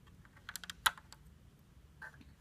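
Plastic Lego bricks clicking and clacking as pieces are handled and pulled off the model, a handful of sharp clicks a little under a second in, the last the loudest.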